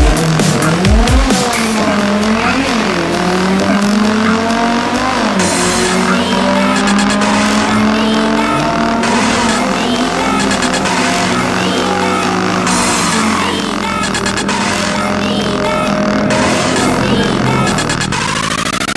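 Nissan GT-R's twin-turbo V6 accelerating hard down a drag strip in a stock car, the engine note rising through each gear and dropping back at the shifts. Electronic music plays over it.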